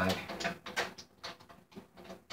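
Irregular small clicks and knocks from a drum key turning the tension rods of a snare drum.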